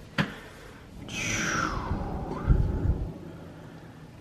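Stained-wood barn door rolling along its overhead steel rail on its hanger wheels: a click just after the start, then a second or so of rolling rumble, ending in a thump about two and a half seconds in.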